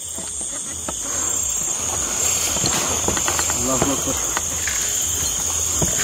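Night insects, crickets among them, trilling in a steady, unbroken high drone, with scattered rustles and clicks from movement through the weeds in the middle of the stretch.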